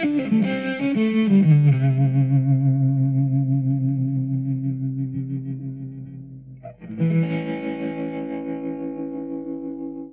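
Electric guitar played through a Marshall Code 25 modelling amp with a modulation effect. A quick run of notes gives way to a long note that rings and fades with a wavering shimmer, then a second chord is struck about seven seconds in and left to ring.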